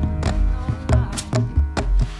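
Instrumental stretch of a song: sharp drum and percussion hits, about six in two seconds, over deep upright-bass notes, with held higher tones sounding underneath.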